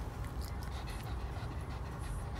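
A dog panting softly, its mouth open and tongue out, over a low steady hum.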